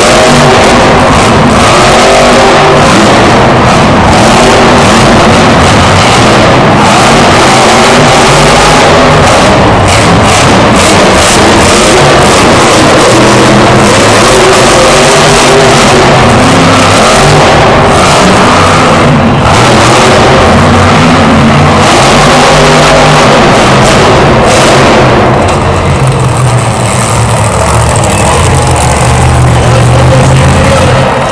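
Monster truck's supercharged V8 revving hard and loud, its pitch rising and falling repeatedly as the truck drives. About 25 seconds in this gives way to a lower, steadier engine note.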